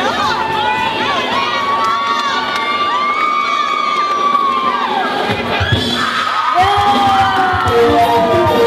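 A crowd of women screaming and cheering in long, high-pitched shrieks as a bride's bouquet is tossed and caught.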